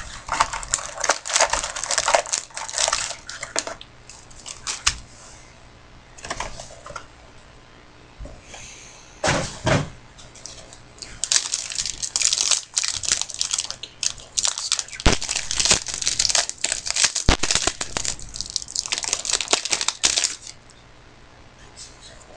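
Trading-card pack wrapper being torn open and crinkled by hand, in irregular bursts, with a long stretch of crinkling in the second half.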